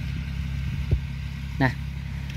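A small farm tractor's engine running steadily at a distance, a low even drone.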